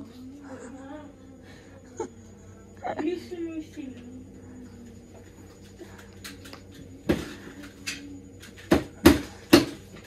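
Wordless voice sounds, drawn-out hums and babble rather than words, in a small room. Several sharp knocks come in, the loudest four close together in the last few seconds.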